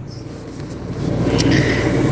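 Low background rumble and hiss that grows louder about a second in.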